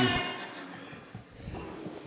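A man's amplified word ends, then a lull of faint hall room tone with a few soft low thumps.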